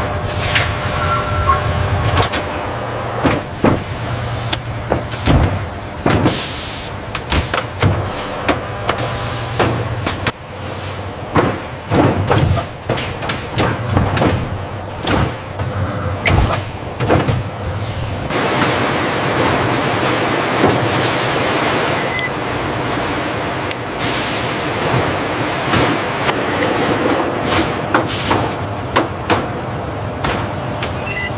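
Automated warehouse machinery running: a steady low hum under frequent short clanks and air hisses, with a longer rushing hiss about two-thirds of the way through.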